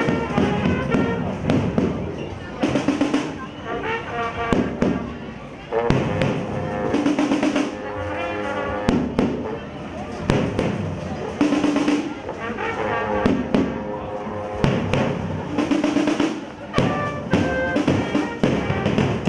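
Street band playing: brass and saxophone (tuba, trombones, trumpet, euphonium) over samba surdo drums beating in a steady rhythm.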